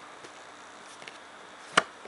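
A single sharp click, most of the way through, as a trading card is slid off the front of a hand-held stack and the next card comes into view.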